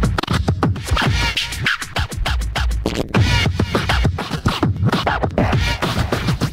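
Hardtek (freetekno) electronic dance music: a fast, hard kick drum with repeated falling, scratch-like sweeps over it.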